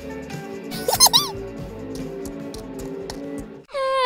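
Light background music for children, with a short burst of high, squeaky cartoon sound effects about a second in, their pitch wobbling up and down.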